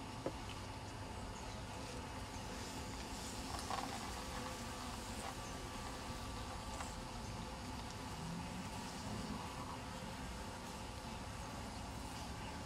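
Faint, steady hum of a cluster of honey bees in an open hive, over low outdoor background noise.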